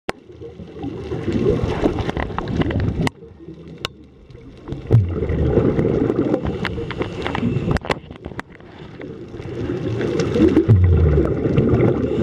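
A scuba diver breathing through a regulator underwater: three long rushes of exhaled bubbles, one every three to four seconds, with quieter gaps for the in-breaths between them. Scattered sharp clicks sound throughout.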